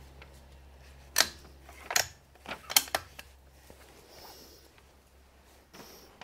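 Handling of a Barrett MRAD rifle and a trigger pull gauge between trigger-weight tests: several sharp clicks and clacks between about one and three seconds in, over a low steady hum that fades out about two seconds in.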